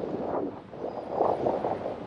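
Strong wind on the beach blowing across the microphone with a whistle, swelling and easing in gusts.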